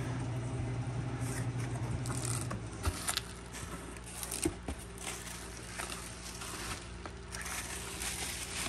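Cardboard box flaps and bubble-wrap packing being handled and pulled back: rustling and crinkling with a few sharp scrapes and clicks. A steady low hum runs under it and stops about two and a half seconds in.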